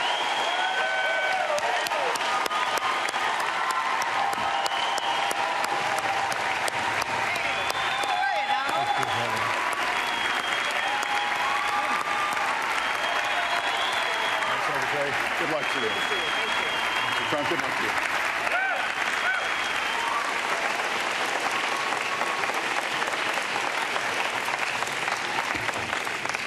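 Large audience applauding steadily throughout, with scattered cheering voices mixed into the clapping.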